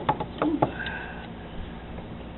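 A few light clicks and knocks as pliers grip a spring squeeze clamp on a coolant hose at the throttle body, followed about a second in by a brief high squeak, over a faint steady hum.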